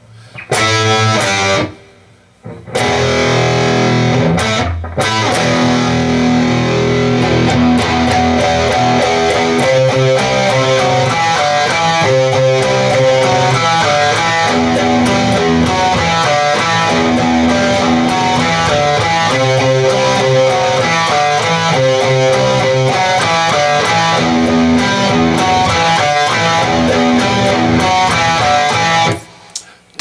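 Distorted electric guitar playing a power-chord rock riff. It opens with short clipped chords and brief pauses, then runs on as a steady repeating riff and stops about a second before the end.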